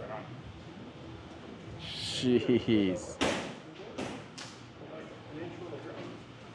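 A short voice sound about two seconds in, followed by three loud, sharp knocks or slams within about a second, ringing in a large hall.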